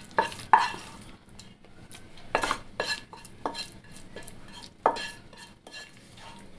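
A spatula scraping and tapping against a pan and a stainless-steel mixer jar as cooked tomato-onion masala is scooped into the jar: about a dozen irregular knocks and scrapes, some leaving a brief ring.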